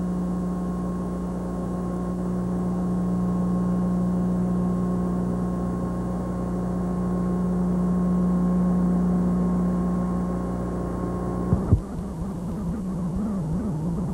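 A steady low hum with overtones that cuts off suddenly about eleven and a half seconds in. Two sharp clicks follow, then a wavering, unsteady sound.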